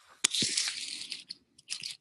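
Crackling, rustling noise right at a microphone, starting with a sharp click about a quarter second in and running for about a second, then a few short scrapes near the end.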